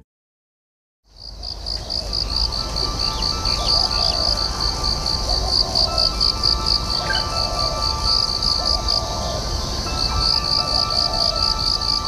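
A high, pulsing insect chirp, about five pulses a second, with a few short bird calls and soft, sustained music tones beneath. It fades in after about a second of silence.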